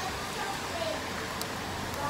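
Steady background noise of an outdoor eating area, with faint voices in the distance and a single small tick about one and a half seconds in.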